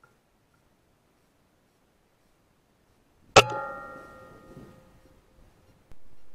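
A single shot from an Air Arms S510 .177 pre-charged pneumatic air rifle: a sharp crack about three and a half seconds in, followed by a metallic ring that fades over about a second and a half.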